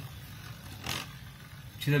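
Beyblade Burst Emperor Forneus top spinning on a plastic stadium floor with a faint, steady whir and one brief scrape about a second in. The top is spinning unsteadily on its free-spinning ball tip.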